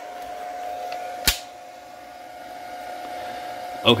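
A steady high-pitched hum from running equipment, with one sharp click about a second in.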